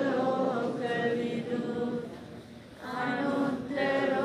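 A group of Buddhist devotees chanting a devotional verse together in unison. One long phrase ends about two seconds in, and after a short pause a new phrase begins.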